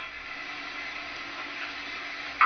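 Steady background hiss with a faint, even hum underneath; nothing else happens.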